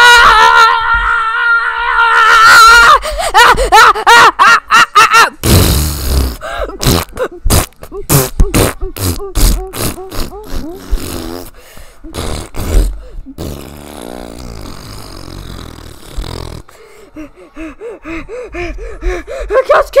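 Puppet-film soundtrack: a high-pitched voice screaming over the first two seconds, then grunting voices and a quick run of sharp hits, followed by a quieter stretch before voices return near the end.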